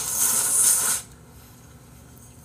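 A man slurping food from a bowl held to his mouth, a loud hissing suck that builds and then stops abruptly about a second in.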